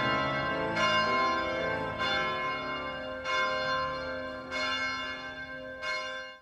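Bells struck about once every second and a bit, each stroke ringing on with many overtones, over held chords in the closing music.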